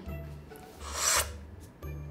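A short rasping whoosh that swells up and peaks about a second in, over faint background music.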